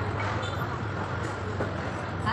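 Steady low hum under a constant background noise, with no distinct knife strokes.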